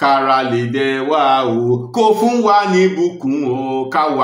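A man chanting a Yoruba prayer in a sung, melodic solo voice: two phrases of held, sliding notes with a short break about halfway.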